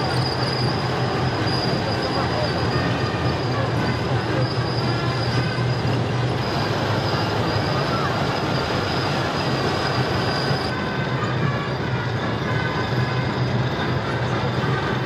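T-14 Armata tanks and other tracked armoured vehicles driving past on pavement: a steady low engine drone with the clatter of the tracks and a thin, steady high squeal from the running gear, which stops about three-quarters of the way through.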